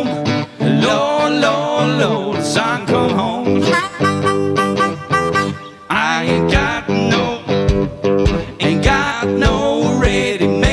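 Live blues band playing an instrumental passage between sung lines: guitar chords under a lead melody that bends in pitch. A brief lull comes just before six seconds in, then the band picks up again with low beats underneath.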